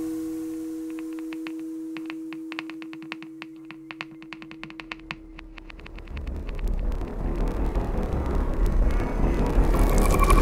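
Acousmatic electroacoustic music made from processed recordings. A steady low hum of two held tones fades away by about six seconds in, under a scatter of sharp clicks. A grainy, crackling noise texture then swells and grows louder toward the end.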